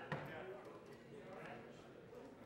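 Faint, indistinct voices in a large room, with one sharp knock just after the start.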